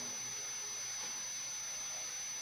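Steady low hiss with a faint, constant high-pitched whine: the recording's background noise, with no distinct sound event.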